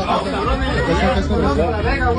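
Several voices talking and shouting over one another in an excited babble, with no single voice clear.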